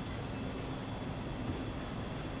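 Steady room noise with no speech: a low rumble under a faint, constant hum.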